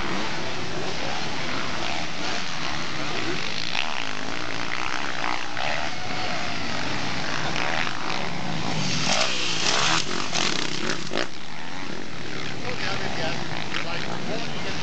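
Motocross motorcycle engines revving on the track, rising and falling in pitch, with a louder stretch about nine to eleven seconds in.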